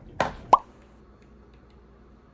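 Two quick plopping pops about a third of a second apart, the second louder, with a short upward pitch sweep.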